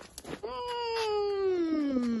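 Eurasier dog giving one long whining moan that starts about half a second in and falls steadily in pitch.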